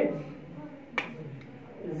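A single short, sharp click about a second in, in a pause between spoken phrases; otherwise only low room tone.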